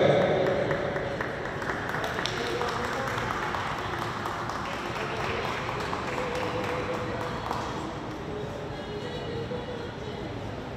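Indistinct chatter of a crowd, echoing in a large stone hall, with music faintly underneath.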